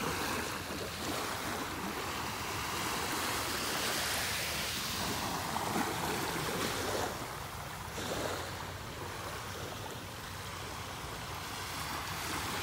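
Small waves washing up onto the shore: a steady rush of surf that swells and eases.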